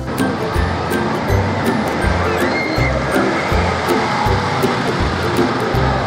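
Background music with a steady low beat, about two beats a second, over a steady rushing noise.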